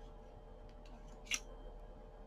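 Quiet handling of yarn being wrapped around the plastic pegs of a round knitting loom, with one short scrape a little past halfway, over a faint steady hum.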